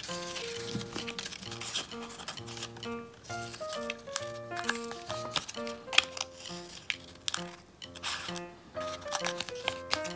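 Background music, a tune of short notes, over scissors snipping through paper strips several times, the loudest snip about six seconds in.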